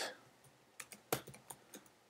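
Typing on a computer keyboard: a handful of separate keystrokes, the loudest a little past a second in.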